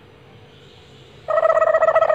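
Quiet at first, then a little past halfway a person's high-pitched voice holds one steady note with a fast flutter through it.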